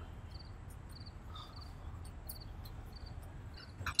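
Crickets chirping: short high chirps repeating evenly, a couple of times a second, over a faint low hum.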